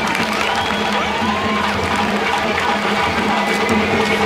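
Audience applause and cheering at the end of a poem, with the live band's accompaniment, including a held low note, carrying on underneath.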